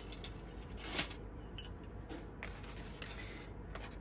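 Faint handling sounds as a metal clip is fitted onto a stack of watercolour paper cards: a few small clicks, the loudest about a second in, with paper rustling.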